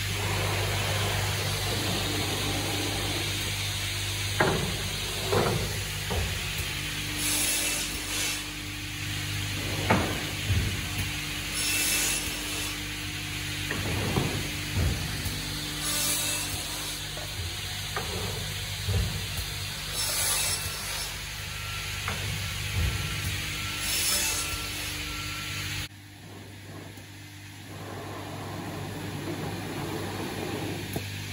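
Salvamac Salvapush 2000 optimising cross-cut saw running an automatic cutting cycle. Its motors hum steadily while the pusher drives the timber through, with irregular knocks and clatter from the cuts and feed, and a short hiss about every four seconds. The sound drops suddenly near the end.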